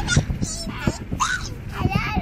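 Young children's short, high-pitched squeals and honk-like cries, over a low steady rumble of car cabin noise.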